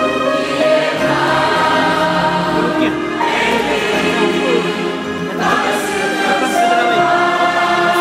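Large church choir singing a gospel hymn, many voices together holding long notes phrase by phrase, with short breaks between phrases about three and five and a half seconds in.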